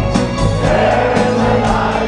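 Live rock band playing with a steady drum beat under many voices singing together, heard from the audience.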